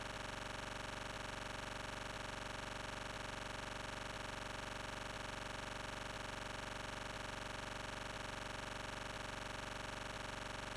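A steady, unchanging hum at a low level, made of many tones at once.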